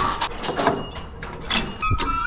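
Heavy steel chain clanking against a steel frame, with scattered metallic knocks and a few sharp ringing clinks near the end.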